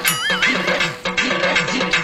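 A horse-whinny sound effect with a warbling, wavering pitch, the second of two calls, over background music. From about a second in, the music carries a quick, even beat.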